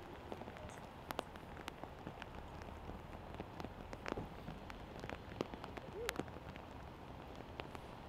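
Steady rain falling, with many scattered sharp drips and taps.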